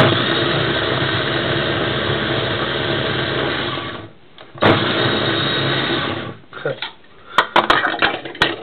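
Krups electric mini chopper running under a hand pressing its lid, chopping carrot and apple: one run of about four seconds, then after a brief pause a shorter run of about a second and a half. A few sharp clicks near the end.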